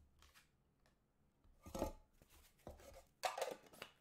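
Handling of card packaging: faint clicks, then short scrapes and rustles of cardboard and plastic wrap, the loudest about two seconds in and in a cluster near the end.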